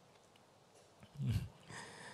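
A quiet pause, then about a second in a man's brief low chuckle, falling in pitch, followed by a fainter, higher sound near the end.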